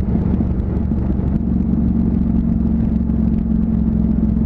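Honda CTX700's parallel-twin engine running at a steady cruise, heard over wind noise from riding.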